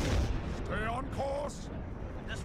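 Battle sound effects from an animated space dogfight: a deep, rumbling explosion that fades away in the first half second, followed by a brief shouted voice over the background din.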